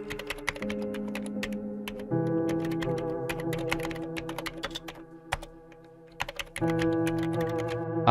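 Computer keyboard typing: quick, irregular key clicks over background music of sustained chords that change about two seconds in and again near the end.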